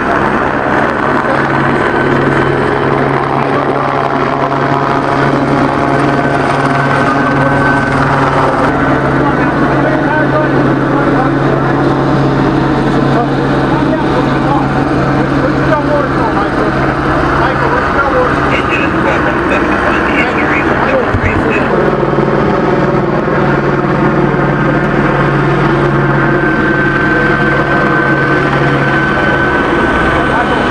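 Helicopter circling overhead: a steady, loud drone with a constant low hum that runs through without a break, over indistinct voices.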